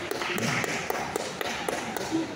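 Wrestlers grappling on a wrestling mat in a large sports hall: irregular sharp taps and light thuds, about half a dozen in two seconds, from hands and bodies on the mat, over faint hall noise.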